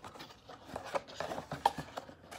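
Cardboard box handled close to the microphone: irregular rubbing and scraping with a few small knocks.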